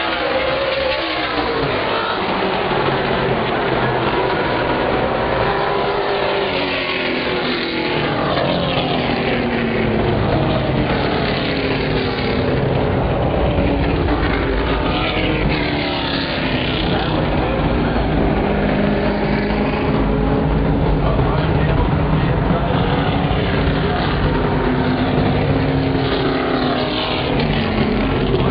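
A field of ASA STARS super late model stock cars running laps. Their V8 engines overlap, each note rising and falling as a car passes by.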